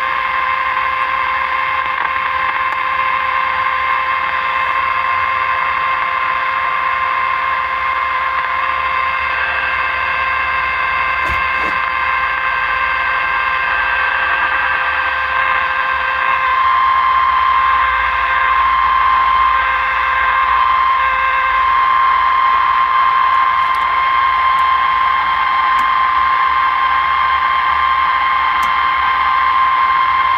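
A Zenith tube radio's speaker giving out a signal generator's steady test tone over hiss while the set is being aligned on the broadcast band. The tone holds steady and grows a little louder about halfway through, as an adjustment brings the set toward its peak.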